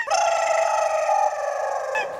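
Rooster crowing: one long, steady, high call held for about two seconds.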